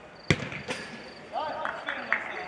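A football kicked hard on a shot at goal: one sharp thud, then a smaller knock under half a second later. A player's shout follows in the second half.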